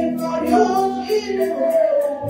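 A woman singing a worship song into a handheld microphone, holding long notes over an instrumental backing with a steady beat.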